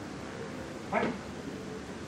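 A pause in a man's amplified talk: steady hall room noise, broken about a second in by one short spoken word.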